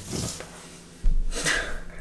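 A man's short breath through the nose, with a low bump from the handheld camera being moved about a second in.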